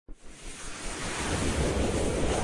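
A whooshing, wind-like noise swell with a low rumble from an animated logo intro, building steadily louder.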